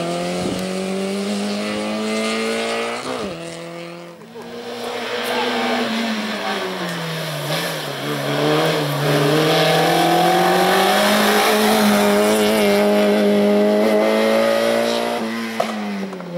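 Peugeot 106 slalom car's engine revving hard, its pitch climbing under acceleration, dropping sharply as the throttle is lifted about three seconds in and dipping again near the middle, then held high before falling away near the end. Tyres squeal as it turns through the cone chicanes.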